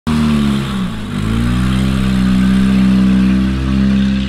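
A rally car's engine held at high revs: the revs dip briefly about a second in, then climb back and hold steady.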